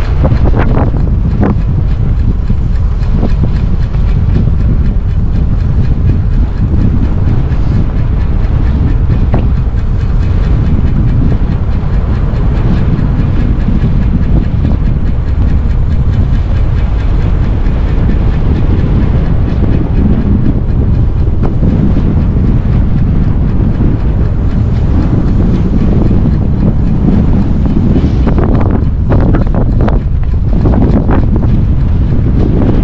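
Loud, steady wind buffeting the microphone of a camera riding on a speed e-bike at speed, mixed with a continuous deep rumble of the tyres over the road surface.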